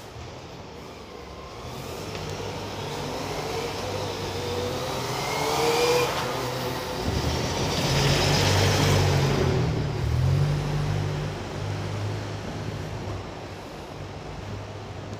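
A city bus's engine growing louder as the bus approaches, its pitch rising, then loudest as it passes close by between about six and ten seconds in, and easing off afterwards.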